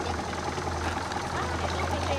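Motorboat engine running steadily with a constant low hum while towing an inflatable ring, with water noise around the boat.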